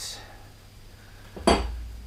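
A single sharp clink of kitchenware being handled on the counter, about one and a half seconds in, with a brief ring and a low thud under it.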